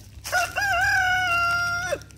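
A rooster crowing once: one long call, held level for over a second and dropping off at the end.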